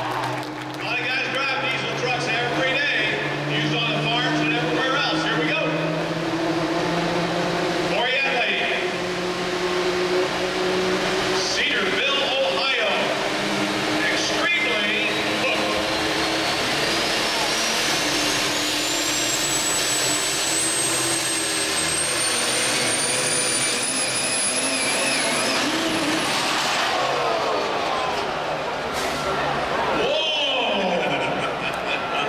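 Super stock diesel pulling truck's engine running under load, with a thin high turbo whine that climbs steadily from about the middle and cuts off near the end, as the engine's pitch falls away.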